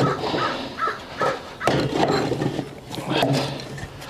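Green-sand mold being shaken out of a wooden molding flask over a sand muller: knocks of the wooden flask and loose foundry sand spilling and rustling into the muller bowl. A few short calls, like a crow cawing, sound in the first second.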